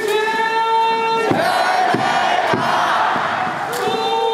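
Baseball crowd chanting a player's cheer song in unison, in long held calls, with a few sharp beats around the middle.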